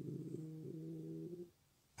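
A man's long, drawn-out hesitation sound "euh…", a low hum held at nearly one pitch that fades and stops about a second and a half in.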